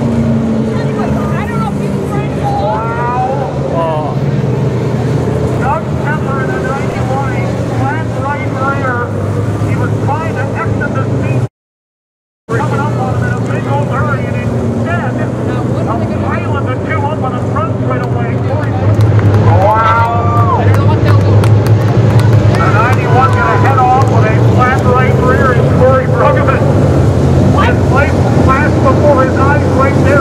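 Several dirt-track modified race cars' engines running as the pack circles the track. The sound cuts out completely for about a second near the middle and is louder over the last third.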